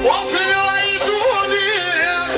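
A man singing through a microphone and PA, sliding up into a long, wavering, ornamented note over live band music with steady held notes underneath.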